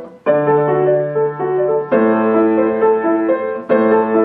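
Grand piano played solo: after a brief pause, a melody over held bass notes, with a new bass note and chord struck about every two seconds.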